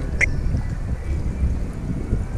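Wind rumbling and buffeting on an action camera's microphone just above the water, with a brief high chirp a fraction of a second in.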